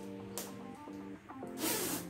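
Soft background music with held notes, under a fabric jacket's zipper being pulled closed: a brief noise about half a second in and a longer one near the end.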